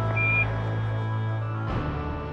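Background score holding a sustained chord over a low drone, shifting to a new chord near the end. Near the start, one short high radio beep sounds: the Quindar tone that closes a Houston transmission on the Apollo air-to-ground loop.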